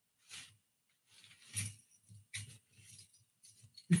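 Faint, brief rustles of a thin folding reusable shopping bag being pulled out of its pouch and shaken open, four or so soft bursts.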